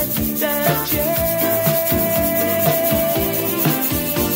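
A soul-pop band recording plays, with a long held mid-pitched note through the middle, while a metal tube shaker (LP Torpedo Shaker) is shaken along with it in a quick, steady rhythm.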